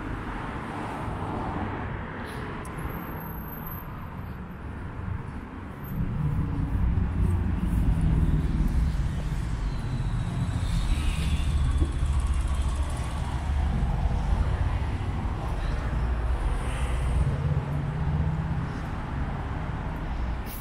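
Road traffic on a town high street: cars running and passing, a steady street noise. About six seconds in, a louder low rumble sets in and stays.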